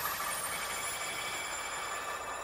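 Electronic logo-intro sound effect: a sustained shimmer of several high tones, warbling slightly.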